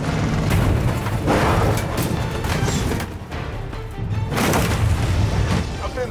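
Heavy crashes and bangs of motorhomes colliding in a demolition derby, several hits in a row, over a music soundtrack.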